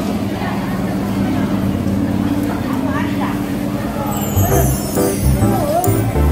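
Background voices over a steady low hum, with background music with a bass beat coming in about four seconds in.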